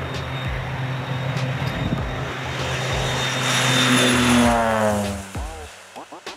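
Crop-dusting aircraft making a low pass: a steady engine and propeller drone swells to its loudest about four seconds in, then drops in pitch and fades as the plane goes by.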